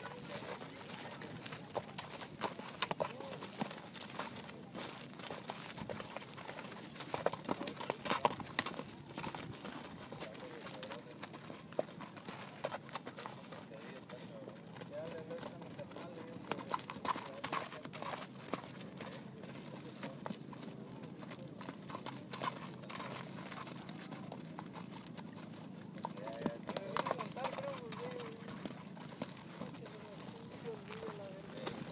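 Horses' hooves striking hard dirt in an irregular run of thuds as several horses walk, trot and prance about, with faint voices in the background.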